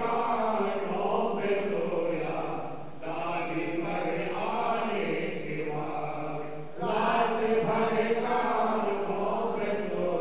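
Devotional chant sung in long, slow phrases, each held for a few seconds, with a new phrase starting about three seconds in and again near seven seconds.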